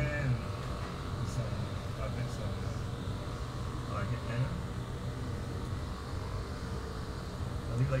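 Quiet, indistinct voices over a steady low mechanical hum, with clearer speech starting right at the end.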